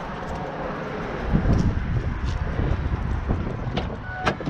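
Footsteps scuffing through grass and camera handling noise, then a pickup truck's door latch clicking open near the end.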